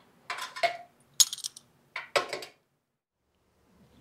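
A few short metallic clinks and scrapes of metal being handled on a steel welding table, four in quick succession over about two and a half seconds, one with a brief ring.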